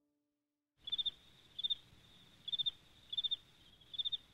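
A cricket chirping: short pulsed chirps at one steady high pitch, about one every three-quarters of a second, starting about a second in over a faint outdoor hiss.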